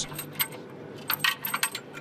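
Several light metallic clinks and taps, one early and a quick cluster in the second half, with a faint high ring after them, over a faint steady hum.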